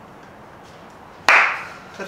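A loaded barbell clanks once, sharply, about a second in as it is lifted in a deadlift, with a short ring fading over half a second.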